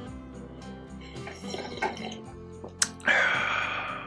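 A person sipping a hot drink from a mug over quiet acoustic guitar background music, then, about three seconds in, a loud breathy sound lasting about a second after the swallow.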